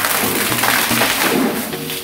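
Two bottles of Coca-Cola erupting after Mentos candies are dropped in: a loud, dense fizzing spray of foam that slowly eases toward the end, over background music with a steady bass line.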